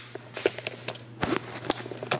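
Footsteps indoors: a handful of short, uneven knocks over a steady low hum.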